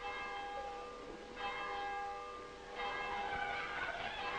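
A large church bell struck three times, about a second and a half apart, each stroke ringing on as the next one sounds.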